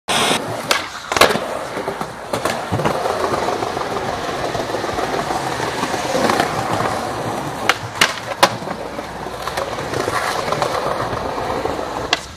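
Skateboard wheels rolling on concrete, with sharp clacks from the board scattered through, including three close together about eight seconds in.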